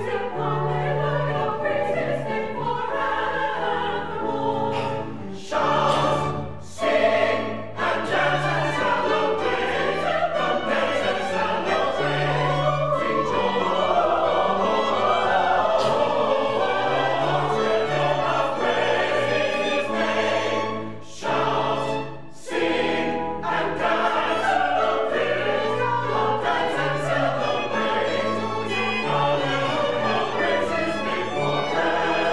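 Mixed church choir singing in parts, accompanied by violins, in sustained phrases with a few brief breaks between them.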